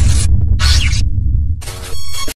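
Subscribe-button outro sound effect: a deep bass rumble under two short bursts of high hissing noise, then a brief ringing tone near the end.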